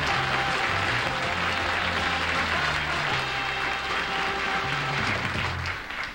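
Studio audience applauding over a short game-show music cue with a walking bass line; both stop just before the end.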